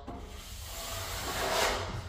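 Superflex flexible steel plastering trowel drawn across wet joint-and-skim filler on a wall, spreading a top coat. It makes one long scraping rub that swells near the end and then eases off.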